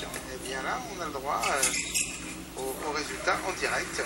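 A voice speaking quietly, over a steady low hum.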